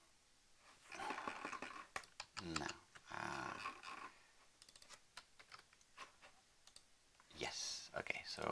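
Typing on a computer keyboard: quick runs of key clicks, densest in the second half, with soft muttering in between.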